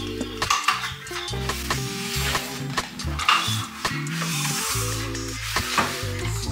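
Kitchen clatter: utensils and dishes clinking and scraping, with repeated sharp clicks and some hissing, stirring-like noise, over background music with a steady low bass line.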